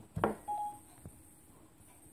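Apple iPad's Siri tone: one short electronic beep about half a second in, the chime Siri gives when it stops listening and starts processing a request. A brief soft thump comes just before it.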